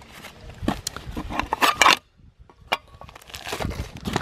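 Rustling of a nylon stuff sack and crinkling of food packets being handled, with a brief silent gap around the middle followed by a single sharp click.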